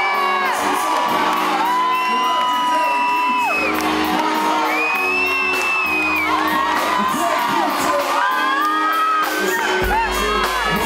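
A live band playing with a steady beat, long held sung or keyboard notes gliding from pitch to pitch over a bass line, and an audience whooping in a large hall.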